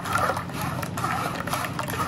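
A thin stream of strained liquid trickling and splashing into a stainless-steel bowl that already holds a foamy pool.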